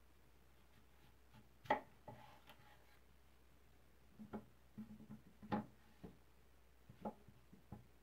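Faint sounds of a freshly sharpened chef's knife cutting through a red apple on a bamboo cutting board: one crunch about two seconds in as the blade goes through, then several light knocks and taps on the board in the second half.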